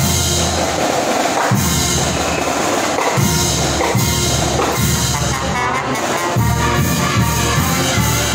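A marching band playing: brass horns over drums in a steady beat, loud and continuous.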